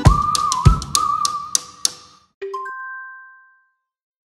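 Background music with sharp percussive clicks and a held high note ends about two seconds in, followed by a short electronic logo chime: a brief low note, then a two-note tone that rings and fades out.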